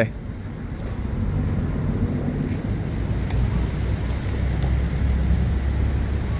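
Low, steady rumble of city traffic, a little stronger in the second half.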